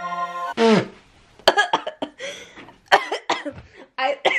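A woman coughing several times in short bursts, set off by dust from the fake vines she is handling. Background music cuts off about half a second in.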